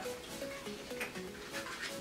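Soft background music, a quiet melody of steady notes stepping from pitch to pitch, with a few faint clicks as a small eyeshadow pot is handled.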